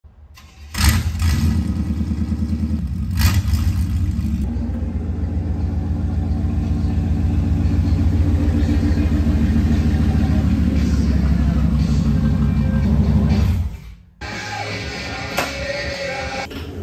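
A 1993 Chevy K1500's 350 V8 running at low speed with a steady exhaust rumble. It starts suddenly about a second in, is a little louder over the first few seconds, and cuts off sharply near the end.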